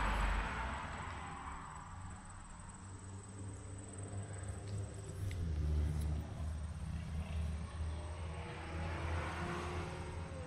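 Road traffic: a car passing that fades away over the first couple of seconds, a low rumble through the middle, and another vehicle approaching near the end.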